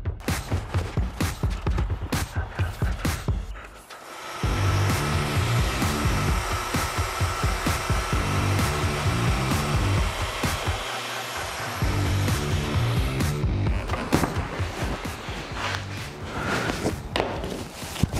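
Background music with a steady beat throughout. From about four seconds in until about 13 seconds, a Festool TS 75 plunge-cut track saw runs with a steady whine as it rips a sheet of plywood along its guide rail, under the music.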